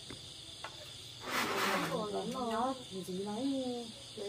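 Insects, crickets, chirring steadily in a high band. About a second and a half in comes a short loud hiss, followed by a person talking.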